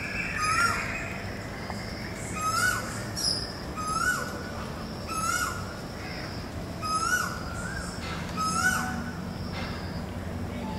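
A bird calling over and over, about six short calls each rising and then dropping, spaced one to two seconds apart, over a steady low background hum.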